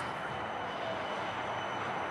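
Melbourne tram running past and slowing for its stop, a steady rumble with a faint falling whine about halfway through, against the hum of city traffic.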